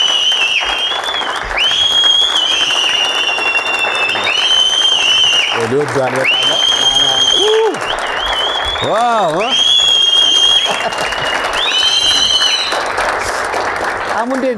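Studio audience applauding steadily, with repeated shrill, high-pitched cheers of about a second each over the clapping and a man's voice calling out a couple of times in the middle.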